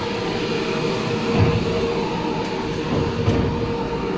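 Steady mechanical hum, a constant drone over a low rumble, with a few dull thumps.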